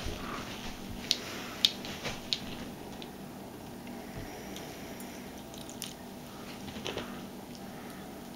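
Muriatic acid and hydrogen peroxide reacting on scrap circuit boards in a glass bowl: a faint steady fizz with a few sharp crackles as droplets spit up from the boards.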